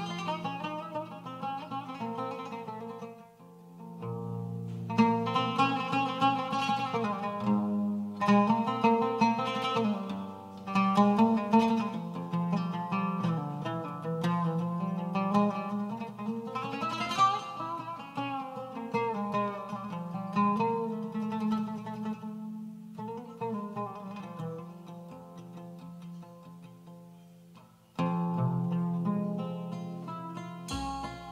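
Arabic oud played live in plucked melodic runs and single notes. There is a short pause about three seconds in, a fast rising-and-falling run around the middle, a fade later on and a loud return near the end.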